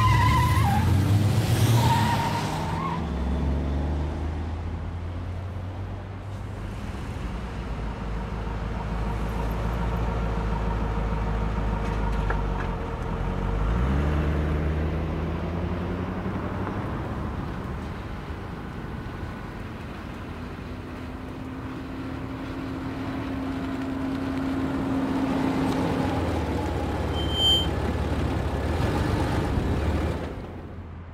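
Car engines running on a street, loudest as one pulls away at the start; about halfway through the engine note drops and then climbs again, as a car goes by. A brief high chirp sounds near the end.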